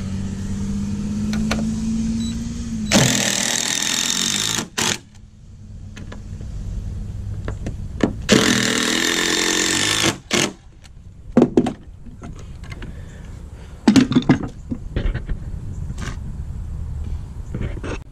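Cordless drill driving screws into wooden deck boards: two bursts of about a second and a half each, a few seconds apart, followed by a few sharp clicks and knocks.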